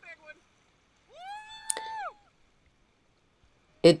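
A woman's high, drawn-out vocal whoop, with no words: it rises in pitch, holds for about a second, then falls away, in otherwise dead silence.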